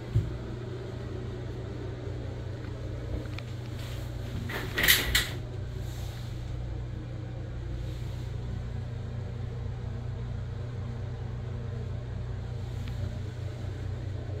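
Steady low hum of a ventilation fan in a small tiled bathroom, with a short knock just after the start and a brief, louder clatter about five seconds in.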